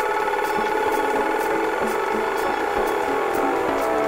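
Live melodic electronic music played on synthesizers and a sequencer: sustained synth chords over steady high ticks about twice a second, with a downward pitch sweep starting near the end.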